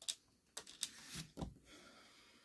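Faint, scattered clicks and taps of a small screwdriver against a tiny screw and the plastic servo mount as a servo is fastened into a foam RC plane wing, about five clicks in the first second and a half.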